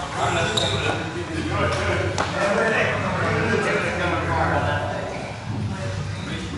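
Indistinct voices talking in a large hall, over a steady low hum, with a couple of sharp knocks about half a second and two seconds in.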